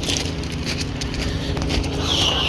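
Footsteps crunching on railway track ballast as someone walks along the rails, with irregular crunches over a steady low hum.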